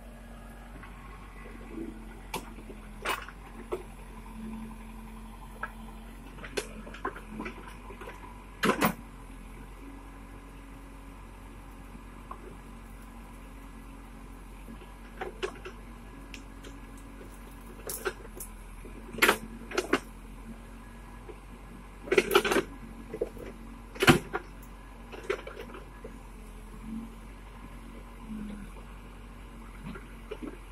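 Backhoe engine running as a faint, steady hum while its bucket forces through dense brush, with scattered sharp cracks and snaps of branches breaking. The cracks come singly every second or two, with a louder cluster about two-thirds of the way through.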